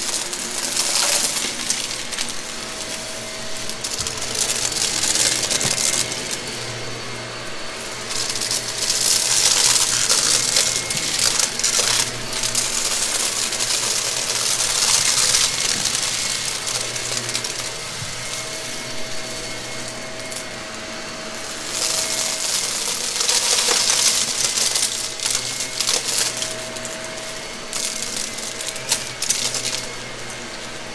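Gray Shark vacuum running with its brushroll on over a mess of small scattered pieces. Loud surges of pickup noise come and go every few seconds over a steady motor whine.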